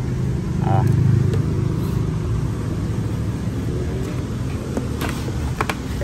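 A steady low mechanical hum, louder for a second or so near the start, with a man's brief "ah" and a few faint clicks near the end.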